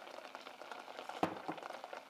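Crushed raspberries gently bubbling in a stainless steel pot as granulated sugar is poured in: a fine crackle of small bubbles popping, with two sharper pops a little past a second in.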